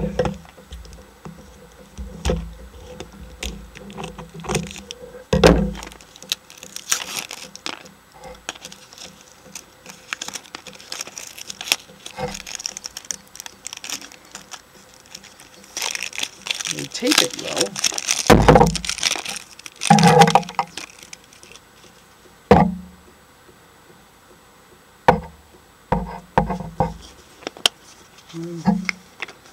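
Plastic toys and plastic Easter eggs handled and set down: scattered clicks and knocks, with bursts of plastic rustling about a quarter of the way in and again past halfway.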